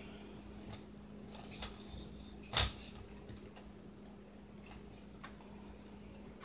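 Light clicks and taps from handling a telescoping tripod with flip-lock leg clamps, with one sharp click about two and a half seconds in, over a faint steady low hum.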